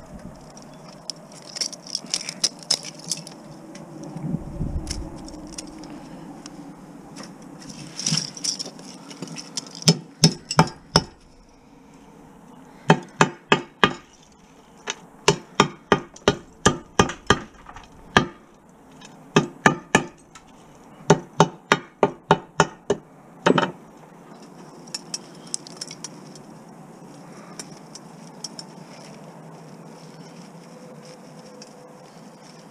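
Hammer blows breaking the ferrite core of a TV deflection yoke to free its copper winding, coming in quick runs of about three sharp strikes a second through the middle of the stretch. Before and after the blows there are light clinks of broken ferrite pieces being handled.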